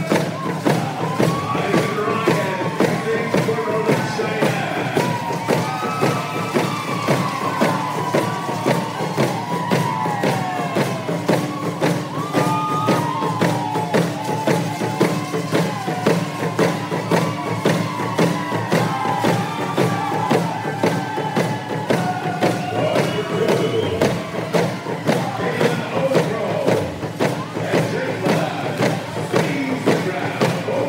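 Rawhide hand drums beaten together in a fast, steady beat under a group's singing and whooping: a hand game team's song.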